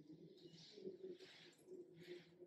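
Near silence: quiet room tone with a few faint, soft, indistinct noises.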